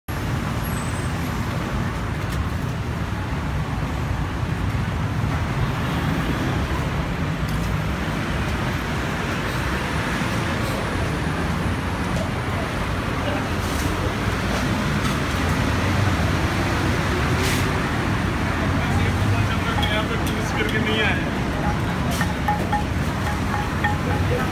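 Busy city-street ambience: steady road-traffic noise with people's voices in the background.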